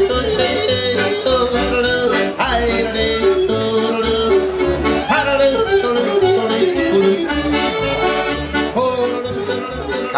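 A man yodeling quickly, his voice breaking up and down between chest voice and falsetto, with repeated sudden leaps in pitch, accompanied by a piano accordion playing chords over a rhythmic bass.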